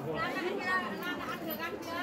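Voices chattering: people talking, with no other distinct sound.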